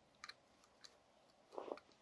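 Near silence: room tone with a few faint small clicks and a brief soft sound near the end.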